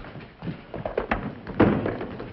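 A run of short clicks and knocks, about six in two seconds, the loudest about one and a half seconds in, from a telephone handset and its cradle being handled.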